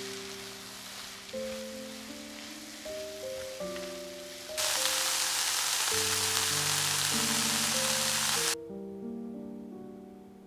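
Sliced leeks and onions frying in a pan, their sizzle much louder for about four seconds in the middle and then cutting off suddenly, under background piano music.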